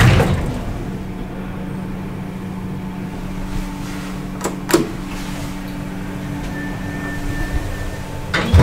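Steady low hum inside a KONE elevator car, with a sharp click about four and a half seconds in as a floor button is pressed. A faint high tone sounds for about a second near the end.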